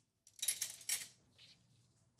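Metal cutlery clinking and jingling as forks and knives are pulled out of a ceramic utensil crock: a cluster of light metallic jingles in the first second, then a couple of fainter clinks.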